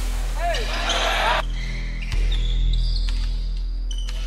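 Background music with a deep bass line over basketball game sound: a ball bouncing and players' voices in a gym.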